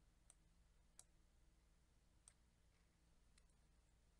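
Near silence with four faint, sharp clicks from working at a computer, spaced about a second apart.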